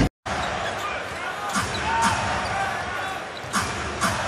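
Basketball game sound in an arena: a steady crowd noise with a ball bouncing on the hardwood court and a few sharp knocks, the loudest about three and a half seconds in. It drops out briefly to silence at the very start.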